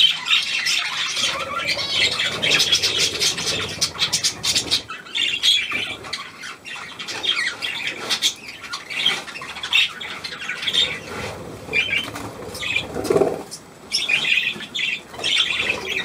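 A flock of budgerigars chattering and squawking: a dense, steady run of short, high chirps and warbles.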